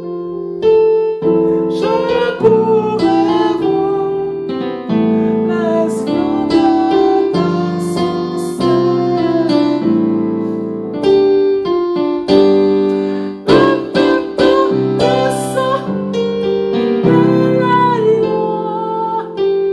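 Keyboard playing a slow gospel-style progression of seventh chords, with a hymn melody on top. The chords run from C major 7 through G minor 7, C7, F major 7, F♯ half-diminished and B7♭9 to E minor 7, then an A minor 7–D minor 7–G7 turnaround, at about 65 beats per minute.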